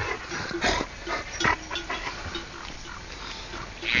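Flock of sheep grazing on a snow-dusted pasture: scattered short animal calls and knocks come irregularly, with brief low clinks.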